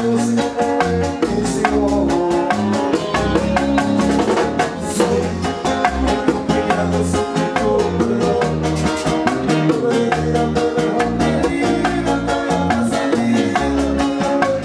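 Live Latin band music: guitars, hand drums and keyboard with a sung vocal, over an even percussion pulse of about four strokes a second.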